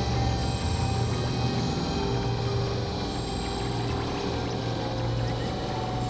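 Dense experimental electronic drone music: several held tones layered over a strong low hum and a haze of noise, holding steady with no clear beat.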